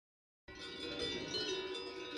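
Silence for about half a second, then many cowbells on a grazing herd ringing together, a jangle of overlapping ringing tones of different pitches.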